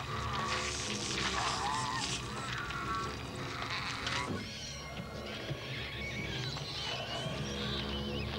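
Horror film soundtrack: a music score of sustained low notes under shrill, wavering creature cries and wet effects noise.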